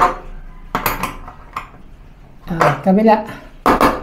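Metal clinks and knocks as a metal strap hinge and its screws are handled and worked against a PVC door: a few sharp separate strikes, one at the start, a couple about a second in, and the loudest near the end.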